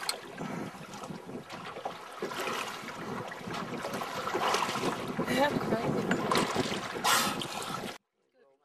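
Sea water sloshing and slapping against a small boat's hull, with wind on the microphone. A short, louder burst of noise comes about seven seconds in.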